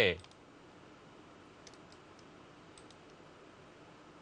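A few faint, sparse computer mouse clicks over quiet room tone, from stones being placed on an on-screen go analysis board.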